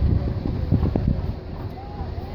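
Wind buffeting the phone's microphone in gusts, easing off about one and a half seconds in, with faint spectator voices underneath.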